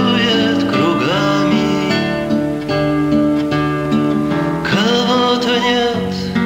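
Acoustic guitar song accompaniment with no words, and a held, wavering melody line over the chords that comes in at the start, about a second in, and again near the end.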